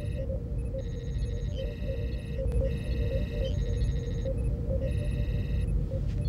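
Sci-fi starship bridge ambience: a steady low engine hum under repeated clusters of high electronic computer-console beeps, each lasting about a second, and short low blips.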